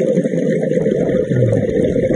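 Muffled underwater noise picked up by a camera in its housing: a rushing, rumbling swell that lasts about two seconds and then fades.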